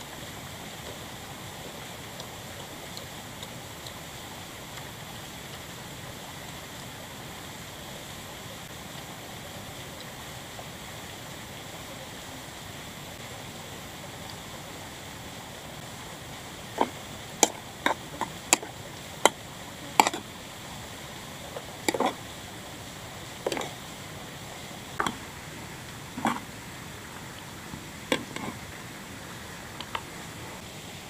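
Steady rushing of a nearby stream or waterfall. From a little past halfway, a series of about a dozen sharp clinks, roughly a second apart: a utensil knocking against an aluminium cooking pot and a plastic bowl as instant noodles are dished out.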